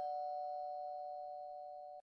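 A bell-like chime from the logo sound effect rings on after its strike, holding a few steady tones that slowly fade away.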